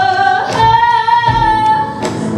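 A young woman singing into a handheld microphone, gliding up into one long held high note.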